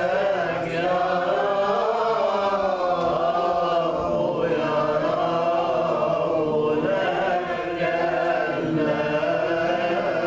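Coptic Orthodox liturgical chant sung by a group of voices together: one long, winding melody that carries on without a break.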